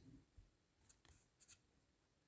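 Near silence with a few faint, short clicks, the last two close together about a second and a half in.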